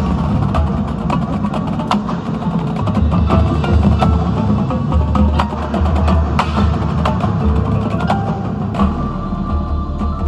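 A high school marching band playing: brass holding low notes that shift every few seconds, under many sharp percussion strikes from the drums and the front ensemble's mallet keyboards.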